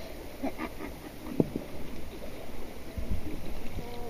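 Shallow water sloshing and swishing as a metal detector's search coil is moved through it, with light wind on the microphone and one sharp click about a third of the way in.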